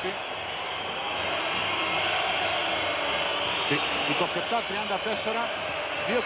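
Basketball arena crowd noise: a packed crowd of spectators shouting and cheering in one steady mass of noise that grows louder about a second in.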